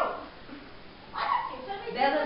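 People's voices; after a short lull, a brief high-pitched vocal cry or exclamation comes in a little past a second in.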